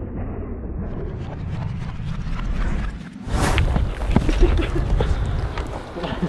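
Slowed-down, low muffled rumble of a rifle shot bursting two Coca-Cola bottles and the cola spraying, lasting about three seconds. It cuts to a sharp crack at real speed, followed by faint voices and outdoor sounds.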